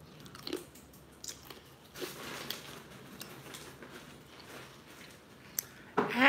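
A person biting and chewing a crunchy snack dipped in plant-based queso, with scattered short crunches and clicks that are densest about two seconds in.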